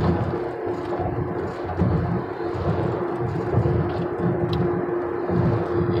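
Road noise inside a moving car: a steady rumble with a constant hum running underneath.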